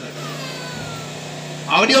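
A steady low engine-like hum with a faint falling whine, heard in a short pause in a man's speech; his voice returns near the end.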